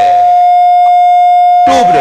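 A steady, unwavering high-pitched electronic tone, like a dial tone, running under a man's speech. The speech breaks off for about a second in the middle, and the tone carries on alone with a faint, thin buzz above it.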